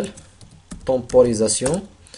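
Typing on a computer keyboard: short, irregular key clicks, most plainly in the first half second, with a person speaking over them from about a second in.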